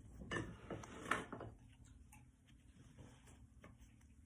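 Small plastic toy parts and packaging being handled by hand: a few light clicks and rustles in the first second and a half, the loudest about a second in, then faint scattered ticks.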